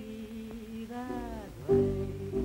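Early-1930s popular song: a woman's singing voice over dance-band accompaniment, a held note and sustained chord, with a louder band chord coming in near the end.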